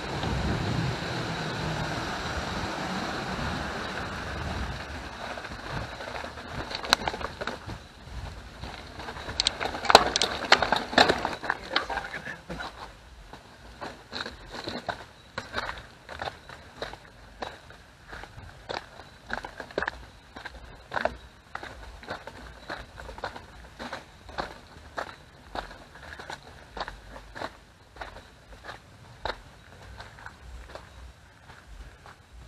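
Mountain bike tyres rumbling across a wooden bridge deck, then the bike clattering and rattling over a rocky stretch from about seven to twelve seconds in. After that come regular footsteps, about three every two seconds, as the bike is pushed along on foot.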